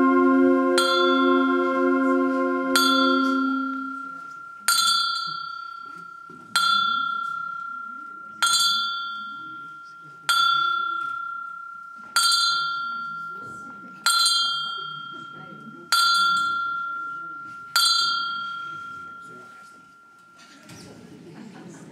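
Concert band's held chord fading out over the first few seconds, then a tubular bell tolling on one note, struck ten times about every two seconds, each stroke ringing out and dying away.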